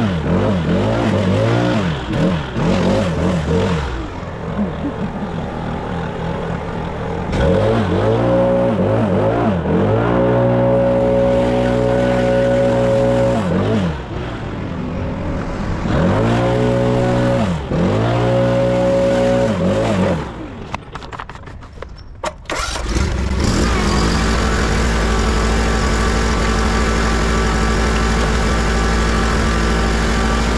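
A small petrol engine running, its speed repeatedly dropping and picking back up over the first twenty seconds. About 22 seconds in, the sound changes abruptly to a steady, even engine note.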